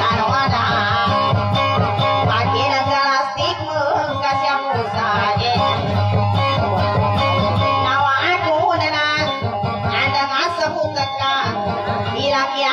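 Live music: a guitar played with a man singing along.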